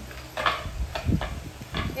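French bulldog puppy breathing noisily through its short nose in about four short snorting bursts as it pushes its face into a plush toy.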